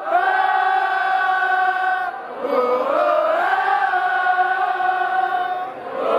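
Concert audience singing a wordless melody together in long held notes, with a sliding note about halfway through.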